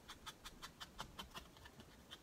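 A sponge dabbing ink onto cardstock in faint, quick, even strokes, about six a second.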